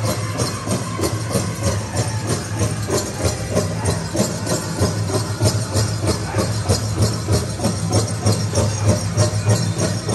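Powwow drum beaten in a fast, steady rhythm, with the bells on the dancers' regalia jingling along with the beat.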